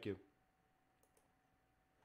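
Two faint computer mouse clicks about a second in, otherwise near silence with a faint steady hum.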